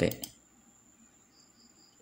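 Near silence: faint room tone with a thin, steady high-pitched tone, and a few faint high chirps near the end, after a voice trails off at the start.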